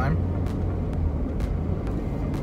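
Steady low rumble of a car's engine and running noise heard from inside the cabin while driving.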